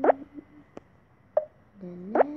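Tablet colouring app's tap sound effects as paint colours are picked and filled. A quick rising bloop comes just after the start, a faint tick in the middle and a softer bloop near the end.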